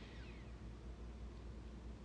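Faint steady low rumble of outdoor background noise, with a short high falling chirp right at the start.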